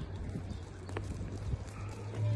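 Footsteps on a gravel roadside, a few soft steps about half a second apart, over a steady low rumble.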